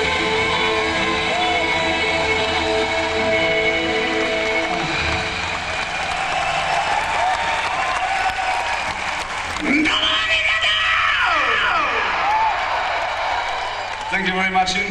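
An electric guitar and band hold a final chord that rings out and fades about five seconds in, at the end of a live rock song. A concert crowd then cheers, with whistles rising and falling a few seconds later.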